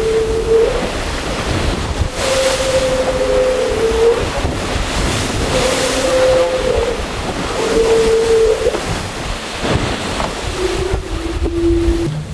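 Wind and rushing sea around a racing trimaran under way in rough water, with wind buffeting the microphone. A humming whine comes and goes about five times, lower in pitch near the end.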